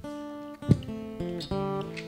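Acoustic guitar playing a run of plucked notes that change every few tenths of a second, with one sharp thump about a third of the way in.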